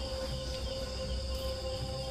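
Crickets trilling steadily at night, over a sustained low musical drone with no beat.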